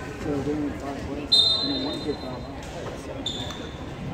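A referee's whistle: a sudden long blast of about a second, then a short second blast, over people talking in the gym.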